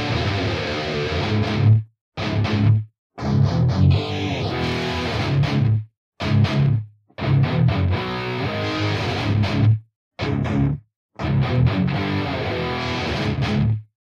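Electric guitar riff played through two cabinet impulse responses that are time-aligned, so the tone is free of the flanging and chorusing of phase cancellation: the "sweet spot". The riff comes in phrases that stop dead every second or two, with short silences between.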